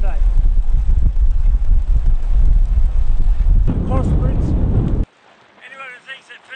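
Heavy wind buffeting on the microphone, a deep, loud rumble that cuts off suddenly about five seconds in.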